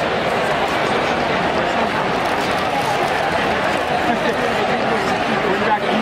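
Steady hubbub of a large ballpark crowd, many voices talking at once with no single voice standing out.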